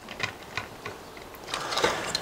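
3D-printed plastic clutch plate of a ratchet mechanism being fitted into its cage, giving light clicking and rattling of plastic parts that becomes a denser run of quick clicks near the end.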